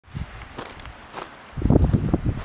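Footsteps on a dirt and gravel trail: a few short crunching steps, then a louder low rumble near the end.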